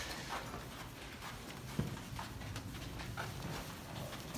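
Footsteps on a carpeted floor: a series of soft, irregular footfalls at a walking pace, with one sharper knock just under two seconds in.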